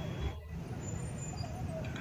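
Street traffic noise: a steady low rumble of vehicle engines with faint voices of people around. A brief dropout comes about half a second in.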